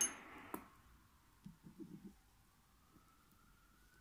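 Small pearl beads and metal findings handled on a cloth-covered table: a short clink at the start, a sharp click about half a second later, then a few faint soft taps.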